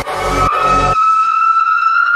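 Witch house electronic music. Bass and beat play until about halfway through, then drop out, leaving a sustained high synth tone that slowly rises in pitch.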